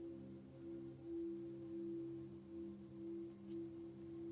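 Ambient drone music in the background: a few low held tones, the top one swelling and fading slowly, like a sustained singing bowl.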